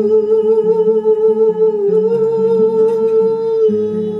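A woman's voice hums one long held note with a slight vibrato, ending near the end. Under it a classical (nylon-string) guitar is plucked in a low, changing accompaniment.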